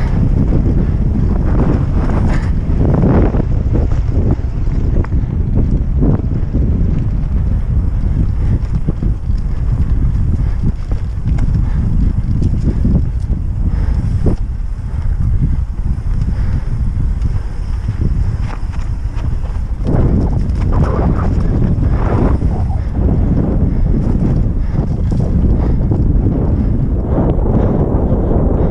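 Wind buffeting the microphone on a fast downhill mountain-bike descent, under a constant clatter of knocks and rattles from the Norco Aurum downhill bike and its tyres over rocks and roots. The knocks come thickest about two to four seconds in and again about twenty to twenty-three seconds in.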